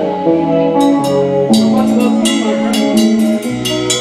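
Band playing live: held pitched instrument notes, with the drum kit's cymbals and drums striking repeatedly from about a second in.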